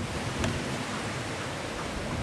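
Wind buffeting the camera microphone: a steady rushing hiss with an uneven low rumble.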